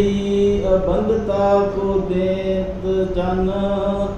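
A man chanting a sacred verse in long, held notes, the pitch stepping to a new note a few times.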